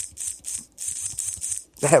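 Computer keyboard being typed on: rapid, uneven clicks of keys, several a second.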